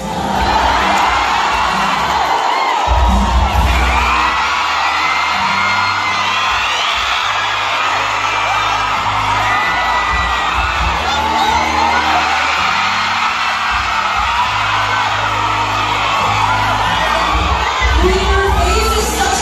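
Music played over a hall's sound system with a steady bass line, under a large crowd of fans screaming and cheering.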